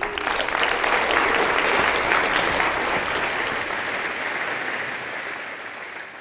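Audience applauding at the end of a talk, starting at once, at its fullest in the first couple of seconds, then slowly dying down.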